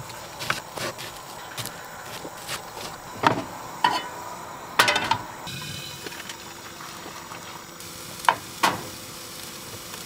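Cooking on a camping gas stove: pans and utensils knock and clatter about a dozen times over a steady sizzle, with the loudest clatter about five seconds in.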